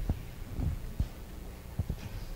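Irregular dull low thumps and bumps, about five in two seconds, over a steady low hum: children moving and sitting down on a carpeted floor.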